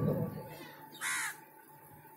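A single short, harsh bird call about a second in, lasting about a third of a second.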